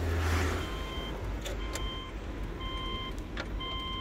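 A car's electronic warning chime beeping over and over, short steady tones sounding about once a second. It plays over a low vehicle rumble that drops away about half a second in, with a few light clicks.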